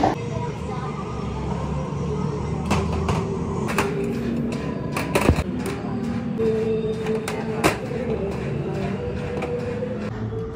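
Metal sewing-machine parts set down on a steel worktable: about half a dozen sharp clinks spread through the middle, over a steady low background hum.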